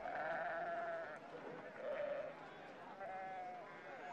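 Sheep bleating: three wavering calls, the first about a second long, then two shorter ones.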